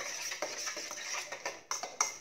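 Kitchen utensil scraping and clicking against a bowl in many quick, irregular strokes.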